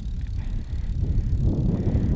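Tyres of an SE Bikes Flyer bicycle rolling on asphalt as it coasts, with a steady low rumble of wind on the microphone.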